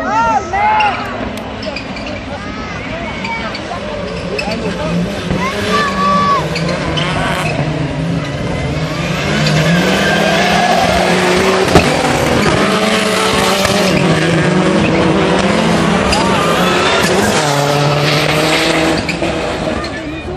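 Rallycross Supercar engines racing on the circuit, revving up and down through the gears. They grow louder about nine seconds in as cars pass close, and stay loud until near the end.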